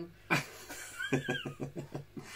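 A man laughing in short, quick pulses, with a brief high-pitched squeak in the middle of the laugh.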